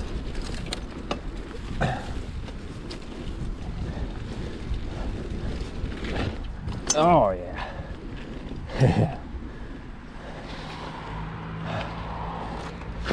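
Wind buffeting the microphone and the rattle and knocks of a full-suspension mountain bike rolling fast over a bumpy dirt trail. There is a short wavering vocal sound about seven seconds in and a steady low hum near the end.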